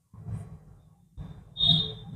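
Felt-tip marker rubbing back and forth on paper as a shape is coloured in, in two bursts of strokes; the second is louder and carries a short high squeak of the tip on the paper.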